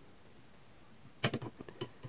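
A 9-volt battery being pulled out of an opened multimeter: a short run of small clicks and scrapes starting a little past halfway, after a quiet first half.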